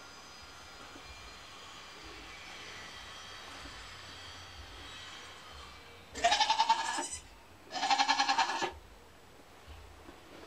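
Nigerian Dwarf goat bleating twice, two long wavering calls about a second apart, starting about six seconds in after a quiet stretch.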